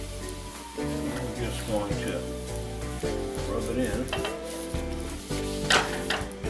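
Flaxseed oil sizzling in a hot cast iron skillet as a cloth wipes it around the pan, with a brief louder sizzle near the end.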